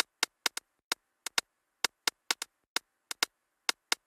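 Sharp, irregularly spaced clicks, about three or four a second, over dead silence: sparse percussive clicks from the edited soundtrack, with no wind or other live sound.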